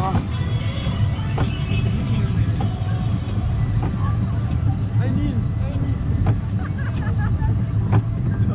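Junior roller coaster train climbing the lift hill: a steady low rumble of the train on the track, with a few scattered clicks, under background voices and music.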